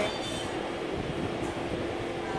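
Steady background noise with a faint, even hum.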